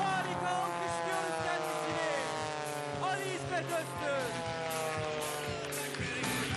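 Single-engine aerobatic propeller plane's piston engine and propeller droning during a display manoeuvre, the pitch falling steadily throughout.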